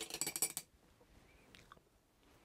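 A quick run of small, sharp clicks and clinks lasting about half a second at the start, from small hard objects being handled on a work surface.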